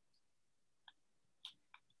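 Near silence from a muted video-call microphone, broken by three faint short clicks in the second half.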